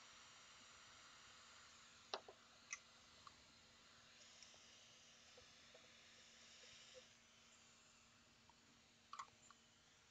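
Near silence: a faint steady hiss and low hum from a hot-air rework gun desoldering a transistor off an engine computer's circuit board, with a few faint tweezer clicks. The hum stops about eight seconds in.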